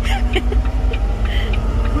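Semi-truck engine running with a steady low rumble and drone, heard from inside the cab.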